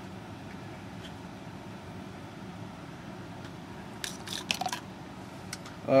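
Steady faint background hiss, with a short cluster of light clicks and rustles of handling about four seconds in.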